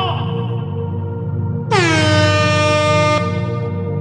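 Electronic dance track with a steady bass beat. About two seconds in, an air horn sample sounds one long, loud blast that drops slightly in pitch at its start, then holds.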